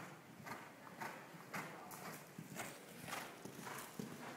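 Horse's hoofbeats cantering on arena sand, growing closer, about two strides a second.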